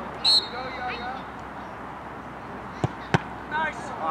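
Referee's whistle: one short, shrill blast with a brief fainter tail, signalling that the free kick may be taken. About three seconds in come two sharp knocks close together, the second louder, as the soccer ball is struck.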